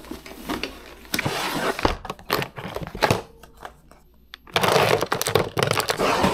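Rustling of a black fabric bag as it is packed, with knocks and clicks as a plastic water bottle and other things are pushed in. The rustling comes in two bursts, about a second in and again near the end.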